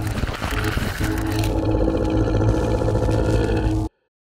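Loud edited intro soundtrack, music layered with a deep roar-like effect, that cuts off suddenly just before the end.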